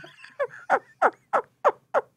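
Men laughing hard: a run of short, breathless "ha" bursts, about three a second, each falling in pitch.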